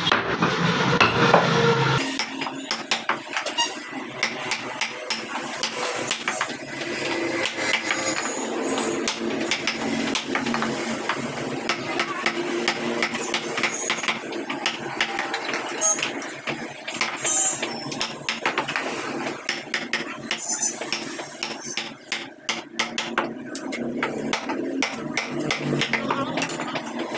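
Wooden mallet striking a wood-carving chisel as it cuts into a wooden door panel, a quick irregular run of sharp taps.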